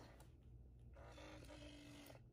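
Near silence: room tone, with a faint steady hum in the second half.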